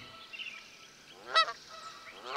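A goose honking once, a short call about one and a half seconds in, over a faint outdoor background.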